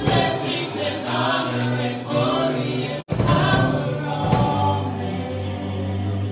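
A small church choir singing a gospel song with keyboard and drum accompaniment. The audio cuts out for an instant about halfway through.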